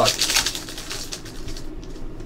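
Foil trading-card pack wrapper crinkling and tearing open by hand: a quick run of crackles over the first second and a half that then dies away.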